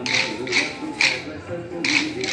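Kolatam dancers striking pairs of wooden sticks together in unison: four sharp clacks about half a second apart, in time with a sung folk tune and music.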